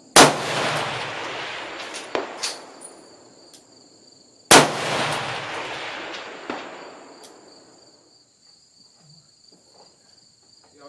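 Two shots from a 6mm ARC rifle about four seconds apart, each followed by a long rolling echo. About two seconds after each shot, the faint sharp clang of the bullet striking a distant steel target comes back. Insects buzz steadily in the background.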